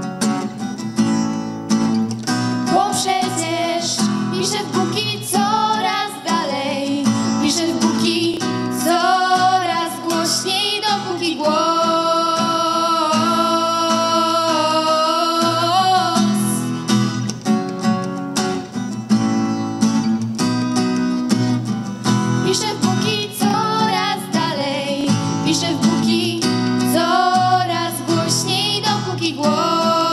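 Two female voices singing a song together to a strummed steel-string acoustic guitar, with long held notes about halfway through.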